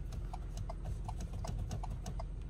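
2022 Ford Bronco Sport's hazard-light flasher ticking steadily, about three ticks a second, over the low hum of the idling engine.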